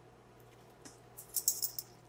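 Brief, faint, high-pitched rattling starting about a second in: small kitchen containers, such as spice jars, being handled.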